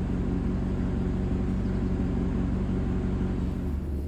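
Maserati Quattroporte 4.2 V8 idling steadily, with no revving. The owner says the engine is still not running right, which puts its emissions out.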